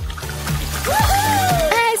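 Background music over a thin trickle of lemon juice running from a toy tap into a glass.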